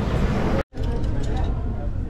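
Busy shopping-mall background: a steady low hum with indistinct voices, broken by a split-second gap of silence about two thirds of a second in.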